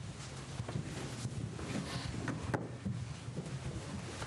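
Scattered footsteps and light knocks of a scout color guard marching to the front of a room, over a steady low hum.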